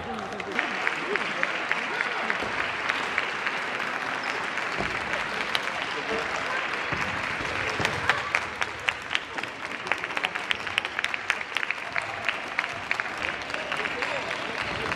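Applause and clapping across a sports hall, with sharp claps coming in a quick run of about four a second in the second half, over the voices of a crowd.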